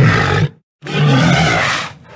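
Walrus calls: two rough, low bellows, a short one and then a longer one of about a second.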